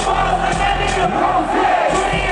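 Live hip-hop music played loud over a stadium PA, with a steady deep bass, mixed with the noise of a large crowd.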